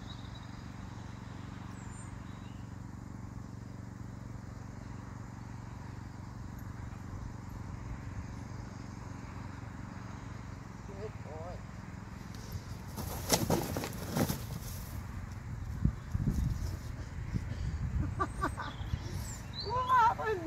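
A pony's hooves knocking and thumping on a low wooden platform as he shifts and steps off it, in a cluster of loud knocks about two-thirds of the way through and scattered thumps after, over a steady low outdoor rumble with a few faint bird chirps.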